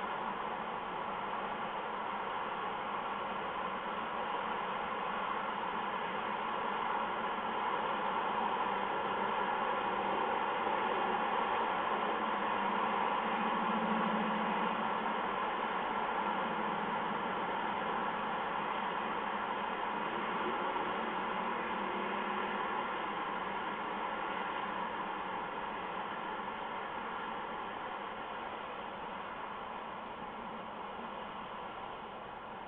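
A steady hiss, swelling slightly in the middle and easing toward the end.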